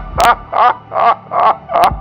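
A man's voice making loud, short syllables in a steady rhythm, about two and a half a second, with a few sharp clicks among them.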